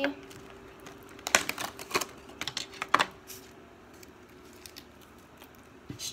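Hard plastic clicking and tapping as a 3x3 puzzle cube is worked out of its clear plastic box. There is a cluster of sharp clicks in the first half, then only quieter, sparser handling.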